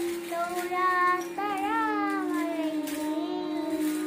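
A young girl singing a melody in long held notes, one of them wavering, over a steady low hum.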